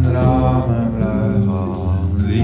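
Song: a voice singing a slow, drawn-out line in Dutch over instrumental accompaniment with low bass notes.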